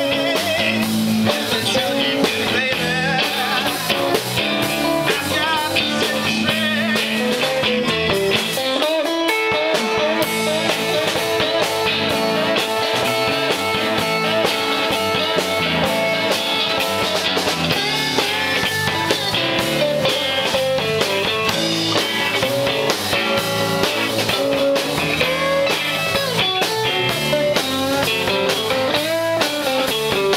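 Live blues-rock band playing: electric guitar over bass and drum kit, with long held notes through the middle.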